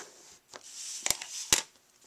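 A plastic bone folder rubbing over cardstock, a soft scraping hiss, with two sharp clicks a little under half a second apart about a second in.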